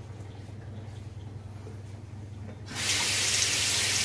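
Bathroom sink tap turned on about two-thirds of the way through, with water running steadily into the basin. Before it, only a faint low steady hum.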